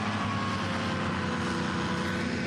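Eight-wheeled armoured personnel carrier's engine running steadily as it drives slowly across a muddy field, a constant low engine drone with a faint higher whine on top.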